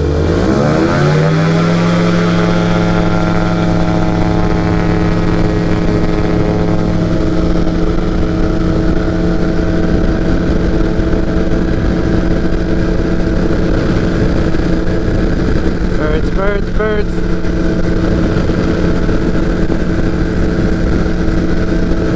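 Flexwing microlight's engine and pusher propeller opening up to full power for take-off. The pitch rises sharply over the first second or two, then holds steady and loud through the take-off run and climb.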